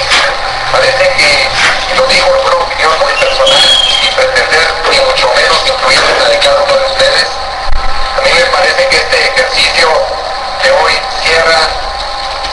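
A voice on an AM radio news broadcast, thin-sounding with little bass.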